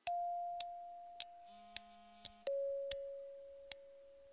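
Two soft, sustained synthesized chime notes, each sounding and slowly fading, the second one lower and coming in about two and a half seconds in, with light ticks scattered between them.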